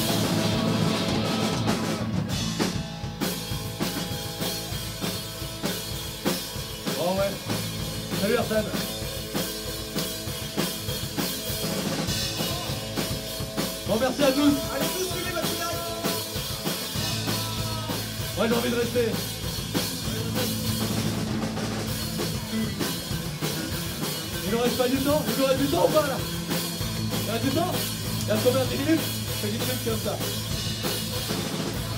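Live punk-rock band playing at full volume: distorted electric guitars, bass guitar and a pounding drum kit, with a singer's voice coming in and out over the top.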